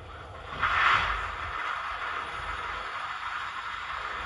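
Sound decoder in an H0 model of the MÁV M28 diesel shunter, playing sound recorded from the real locomotive: a hiss that swells about half a second in and peaks around a second, then settles into a steady hiss over a low rumble.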